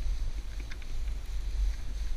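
Wind buffeting the microphone of a pole-mounted action camera during a fast descent through powder snow: a steady low rumble, with faint scattered crackles of snow.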